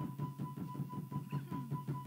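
Live band music: a fast, even beat of about six strokes a second over a bass line, with a held high note.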